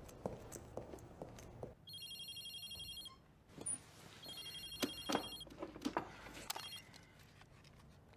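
Motorola mobile phone ringing: two rings of a high, fast-pulsing electronic trill, each about a second and a quarter long, with a short gap between. Faint clicks and rustles sound around the rings.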